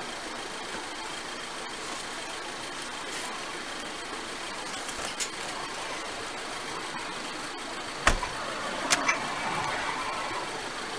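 Steady running of an idling car with street noise around it. A sharp knock about eight seconds in, and another click under a second later.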